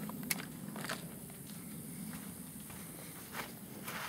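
Quiet handling noise, with a few faint clicks scattered through it over a low background hum.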